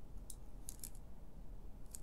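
A few faint, sharp clicks: a panel-mount push button pressed to trigger an XY-LJ02 relay timer, and the timer's Songle relay switching on. The first click comes about a third of a second in, two more just before the middle, and another pair near the end.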